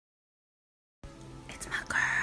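About a second of dead silence, then a television's film soundtrack cuts in abruptly at low level: faint voices over a steady hum, with a couple of sharp clicks.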